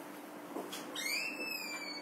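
Chalk squeaking on a chalkboard as a line is drawn: a high tone with overtones that rises slightly and then slowly falls, lasting about a second from halfway in. A faint tap of chalk on the board comes before it.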